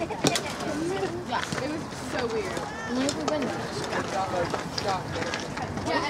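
Several people's voices overlapping, talking and calling out without clear words. There is a single sharp knock just after the start.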